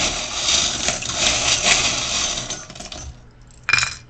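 A handful of small metal charms rattling and clinking for about three seconds, then a short clatter near the end as they land in a wooden bowl.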